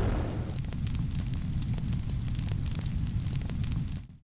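Fire sound effect: a steady low rumble of flames with scattered small crackles.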